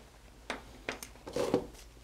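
A few short clicks and rustles of handling at a shelf, with a denser patch of rustling about a second and a half in, as disposable exam gloves are pulled from their box.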